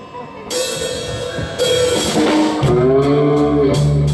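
Live blues band with drum kit, electric guitars and bass playing, with two cymbal crashes in the first two seconds, after a brief lull, and the full band with heavy bass coming back in just past the middle.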